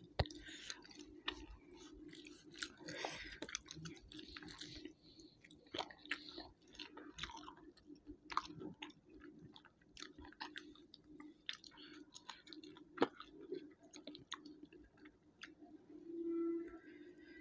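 Close-miked chewing and mouth sounds of someone eating rice and fish with the hand, with frequent small wet clicks, over a low steady hum.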